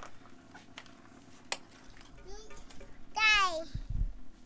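A toddler's voice: a short, high-pitched vocal sound about three seconds in that falls in pitch, after a quieter stretch with a few faint clicks.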